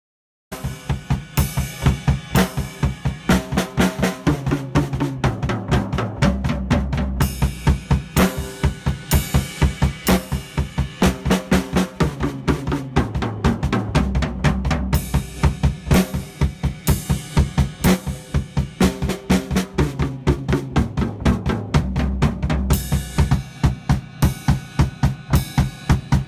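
A drum kit played in a steady rock beat of kick drum, snare and cymbals, starting about half a second in, with fills along the way. Under it runs a backing track with a bass line.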